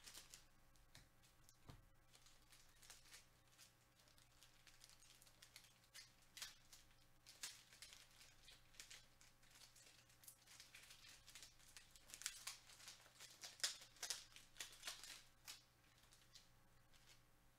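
Faint crinkling, rustling and tearing of trading-card pack wrappers being handled and opened, a run of irregular small crackles that becomes busier and louder near the end.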